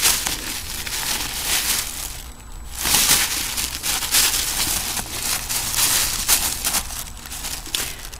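A bag and paper record sleeves rustling and crinkling as 45 rpm singles are handled, with a brief lull a little over two seconds in.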